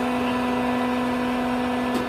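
Steady electric-motor hum of a coco peat block press's hydraulic power unit: one even pitch with overtones over a light hiss, holding level without change.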